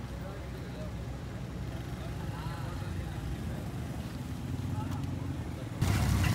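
Cattle market ambience: faint, scattered distant voices over a steady low rumble, getting suddenly louder just before the end.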